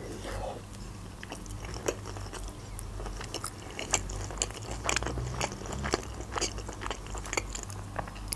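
Close-miked chewing of a mouthful of vinegret, a soft diced beet salad: irregular small wet clicks and smacks from the mouth. A steady low hum runs underneath.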